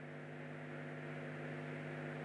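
Low, steady electrical mains hum from the microphone and sound system, growing slightly louder.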